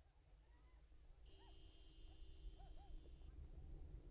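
Near silence: a faint low rumble with faint, distant short rising-and-falling calls, and a faint steady tone lasting about two seconds in the middle.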